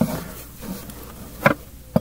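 Handling noise from a hand moving a plush toy against the phone's microphone: a faint, low buzzing rub with a soft bump at the start and a louder one about one and a half seconds in.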